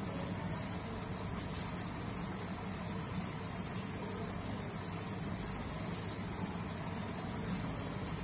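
Steady low hum with a constant hiss over it: unchanging background room noise.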